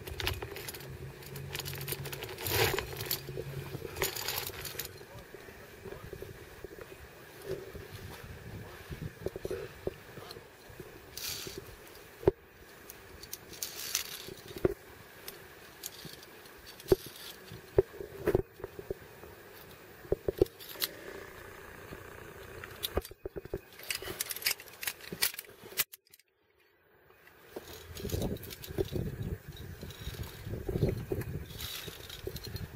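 Via ferrata gear clinking: metal carabiners and lanyard tapping and sliding along the steel safety cable in scattered sharp clicks, with scraping and crunching of boots on loose limestone rock.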